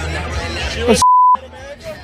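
A censor bleep dubbed over speech: one short, steady, pure beep about halfway through, lasting about a third of a second, with all other sound cut out beneath it. Before it, a voice talks over background music.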